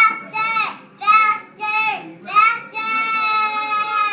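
A young girl's very high-pitched voice in a series of short arching squeals, about two a second, ending in one long held high note.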